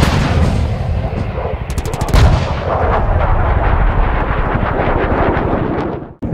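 Automatic gunfire: a rapid, unbroken string of shots with a heavier boom about two seconds in.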